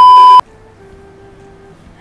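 Loud, steady 1 kHz test-tone beep of the kind that goes with TV colour bars, cutting off abruptly less than half a second in. Only faint background noise follows.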